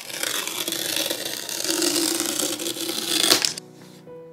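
Paper tear strip being ripped off around the seal of a MacBook Air box: a continuous tearing that ends suddenly about three and a half seconds in, as the strip comes free.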